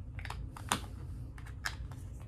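Small plastic cosmetic pots being handled on a table, giving a handful of irregular sharp clicks and taps, the loudest about two-thirds of a second in.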